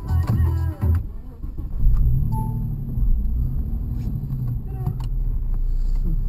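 Suzuki Vitara's engine heard from inside the cabin, a steady low drone while it drives up a snowy track.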